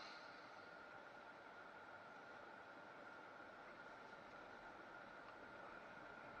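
Near silence: a faint steady hiss with a thin high steady tone under it.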